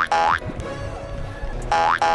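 Cartoon 'boing' sound effects, each a short springy twang rising in pitch, over background music: one at the start and another near the end, with a quieter stretch of music between.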